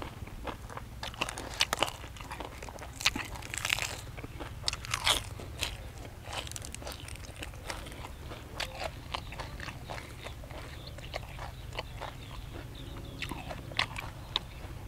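Close-up chewing with many crisp crunches: a person eating grilled field rat with spicy pounded long-bean salad. The crunches come thickest in the first half and thin out later, over a steady low hum.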